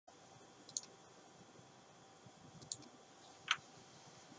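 Three faint computer mouse clicks, the last the loudest, over low room hiss.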